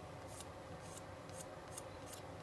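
Faint, short scrubbing strokes, roughly two a second, of a nylon abrasive pad rubbed over a small black plastic model part, polishing it to a semi-gloss finish.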